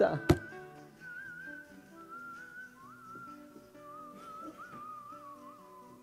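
Soft background music: a slow, single high melody line with gentle pitch bends, sounding like whistling, over held lower notes. A brief sharp tap sounds just after the start.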